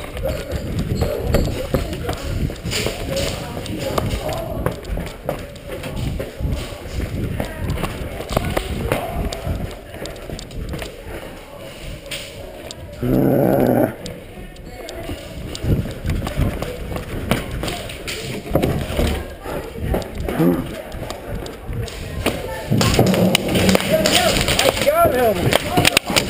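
Footsteps and knocks of a player moving through a plywood-walled indoor airsoft arena, with indistinct voices in the background and a short loud burst about thirteen seconds in.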